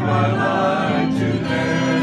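A small church choir and praise band singing a gospel worship song together, several voices sustaining notes, accompanied by acoustic guitar and violins.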